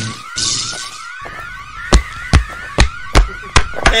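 An alarm siren wailing in quick repeated rising sweeps, about three a second. From about two seconds in, six heavy thuds follow one another two or three a second, the loudest sounds here.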